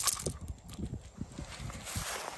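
Faint handling noise of a hook being worked out of a small snook's mouth: light rustling with a few irregular soft knocks and a click at the start.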